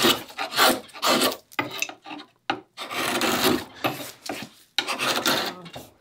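A freshly sharpened chisel paring by hand through dense cedar: about six rough scraping cuts, each a fraction of a second to a second long, with short pauses between. The dense wood makes hard going even for the sharp chisel.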